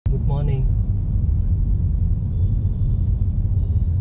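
Steady low rumble of a car on the move, heard from inside the cabin. A brief voice sound comes near the start.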